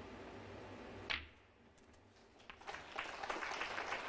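Snooker balls striking: one sharp click of ball on ball about a second in, then a dense run of quicker clicks and knocks near the end as the balls spread.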